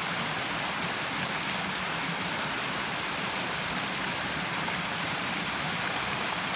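Small woodland stream rushing over rocks, a steady, even rush of water.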